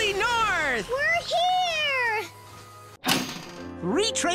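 A cartoon cat character's voice making two long, drawn-out meow-like calls, the first sliding down in pitch and the second rising and then falling. Near the end, after a brief break, music starts.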